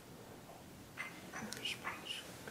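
A man muttering or whispering a few faint syllables under his breath, from about a second in.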